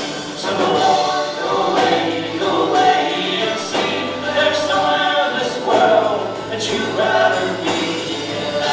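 Live band music: several voices singing together over acoustic guitars, electric guitar and accordion, with steady percussive hits through the song.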